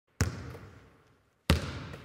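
Two heavy thuds about a second and a quarter apart, each dying away in a long echo: impact sound effects of a logo intro.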